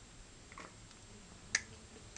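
Spring clamp snapping shut onto the top ring of a vacuum-forming plate: one sharp click about one and a half seconds in, with a fainter click about half a second in.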